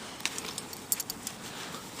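A dog's collar and leash hardware clinking faintly, a few light, scattered metallic clicks as the dog moves its head.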